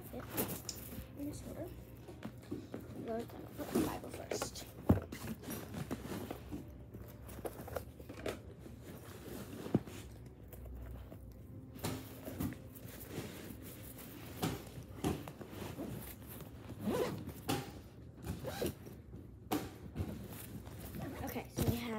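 A bag being zipped and packed, with rustling of clothes and items being handled and a couple of sharp knocks about five and ten seconds in.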